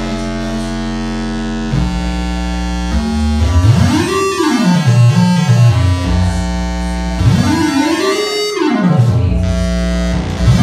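Willpower Theremin, a software oscillator whose pitch and volume follow the player's hand distance over two infrared sensors. It holds a few steady layered tones, then from about three seconds in the pitch swoops up and back down, twice.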